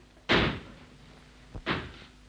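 Two sudden bangs about a second and a half apart, each fading quickly, with a short click just before the second: a door slamming.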